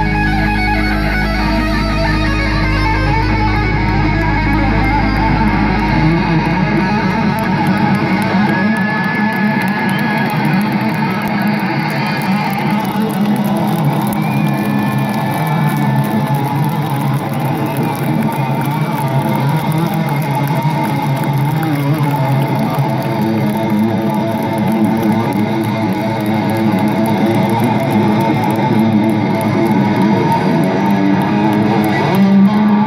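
Live electric guitar solo played loud through a stadium PA and heard from the audience, over a held deep low note that fades out about six to eight seconds in.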